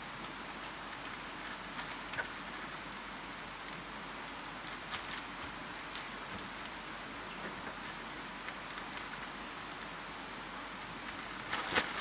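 A plastic zip-lock bag of meat being handled, with faint crinkles and taps over a steady background hiss. Louder crinkling comes near the end as the bag is picked up.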